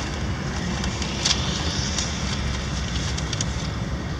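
Steady engine and tyre noise heard from inside the cab of a 2003 Ford Explorer Sport Trac, its V6 pulling the truck along at low speed.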